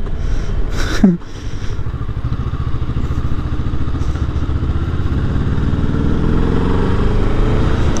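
Motorcycle engine heard from the rider's position while riding. It dips briefly just after a second in, then the revs climb steadily through the second half as the bike accelerates.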